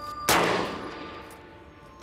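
A single gunshot about a quarter second in, echoing away over the next second and a half.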